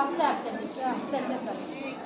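Indistinct voices of people talking in the background: untranscribed chatter rather than a clear announcement.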